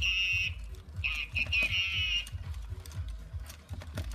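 Furby toys chirping and warbling in high-pitched electronic voices, in two bursts in the first half, over a fast, steady low thumping as they dance.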